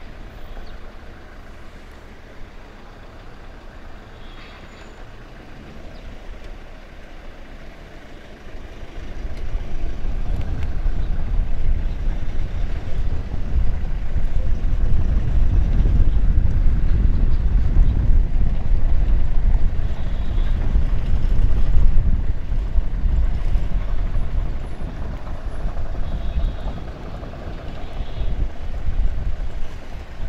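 Vehicles driving along a rough dirt road: a steady engine and road noise that turns into a much louder, heavy low rumble about nine seconds in.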